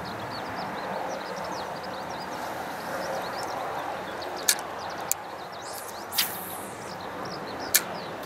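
Steady open-air background with faint high chirps throughout. About six seconds in comes a brief swish, typical of a fishing rod being cast, and there are a few sharp clicks from the fishing tackle, around four and a half, five and nearly eight seconds in.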